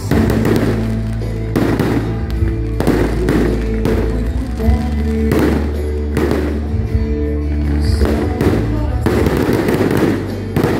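Aerial fireworks bursting in a rapid series, roughly one bang every second, over loud music with a steady bass line.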